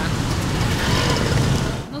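Road traffic on a wet street, with a motor scooter passing close by: a low engine rumble under an even hiss of tyres and traffic. It cuts off suddenly near the end.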